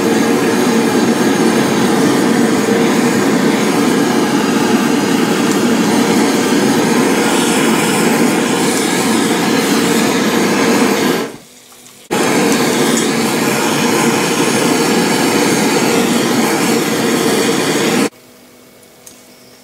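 Kitchen blowtorch flame hissing steadily as it caramelizes the sugar crust on a crème brûlée. The sound drops away for about a second around eleven seconds in, then comes straight back.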